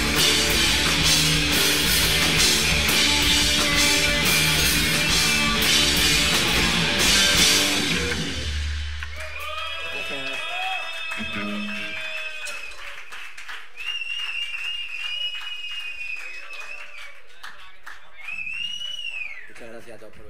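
Live rock band of electric guitars, bass and drums playing loudly, then stopping about eight seconds in with a low bass note ringing out. The rest is the audience's response: high wavering whistles, one rising and falling near the end, with scattered claps and calls.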